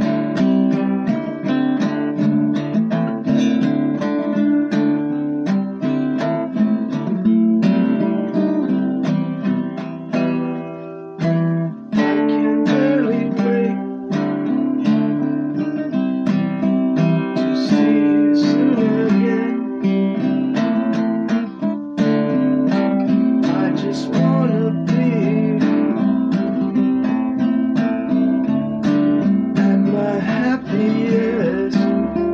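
Six-string acoustic guitar strummed in a steady rhythm of repeated chords, with a brief drop in level about eleven seconds in.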